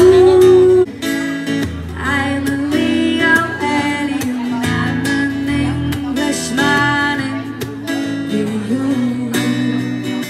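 A woman singing with an acoustic guitar, strummed, in a live performance through a microphone.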